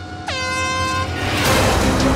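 An air horn blasts once for about a second, starting with a short drop in pitch and then holding steady: the start signal for the heat.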